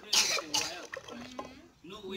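A person clears their throat loudly just after the start, followed by pitched voice sounds without clear words.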